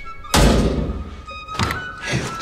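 A loud, heavy, bass-laden thud about a third of a second in that fades over about a second, then a smaller knock near the end, over background music.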